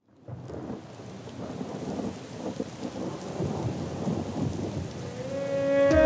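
Rain-and-thunder sound effect opening a track, a noisy rumble that swells gradually out of silence. A held musical note comes in near the end.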